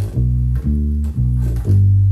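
Fender Precision electric bass played fingerstyle: single plucked notes of a G major triad arpeggio, about one every half second, with the last note held and left ringing.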